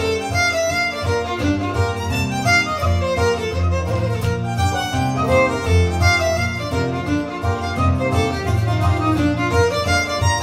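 Fiddle playing a fast Irish traditional reel, its quick bowed melody running over strummed chords on a steel-string acoustic guitar.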